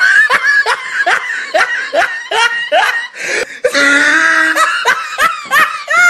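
A person laughing hard: a long run of short 'ha' bursts, about three or four a second, with a longer drawn-out laugh a little past the middle before the quick bursts return.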